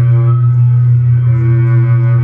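Improvised electroacoustic music from double bass and live electronics: a sustained low drone on one pitch, its upper overtones thinning out in the middle and returning near the end.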